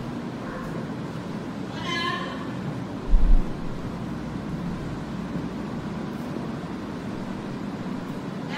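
A parrot's short, high-pitched call about two seconds in, played through the hall's speakers over steady room noise; a dull low thump a little after three seconds.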